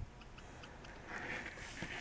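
Faint, quick light ticks of a Copic marker's brush nib dabbing ink onto a small metal owl charm.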